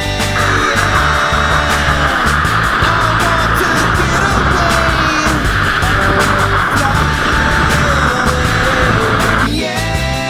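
Rock song with a steady drum beat. A loud, noisy, distorted layer sets in just after the start and cuts off suddenly near the end, with sliding guitar-like notes running beneath it.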